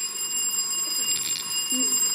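A steady, high-pitched electronic whine with several overtones, unbroken throughout, with a short burst of soft, hissy whispering about a second in.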